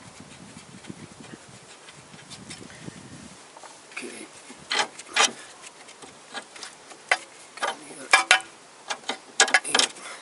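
Irregular sharp metallic clicks and clinks from a socket wrench and steel bolts being worked out of a car's front brake caliper, starting about four seconds in. A low buzz fills the first three seconds.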